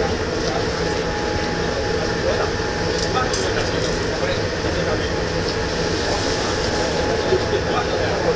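Ship's machinery running with a steady, even hum throughout, with a thin steady tone above it.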